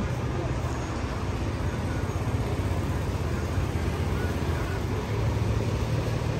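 Steady low rumble of road traffic and running vehicle engines, growing a little louder near the end.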